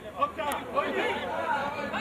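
Several men's voices talking over one another, with a single sharp click about half a second in.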